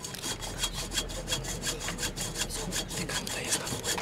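Hand saw cutting through a water service pipe in quick, regular back-and-forth strokes: the pipe is being severed to disconnect the house's water supply.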